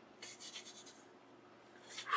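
Faint rubbing of a tissue against skin, a few quick short strokes in the first second, as a red pigment swatch is wiped off the fingers. The pigment is stubborn and stains.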